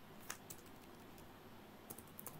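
Computer keyboard keystrokes: a handful of separate, faint key clicks as text is deleted in the editor.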